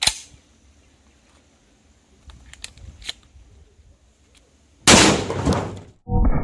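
A 12-gauge Huglu GX812S shotgun being loaded: a sharp metallic click, then a few lighter clicks a couple of seconds later. About five seconds in comes a single loud shotgun blast of 7.5 birdshot, which rings out and fades over about a second.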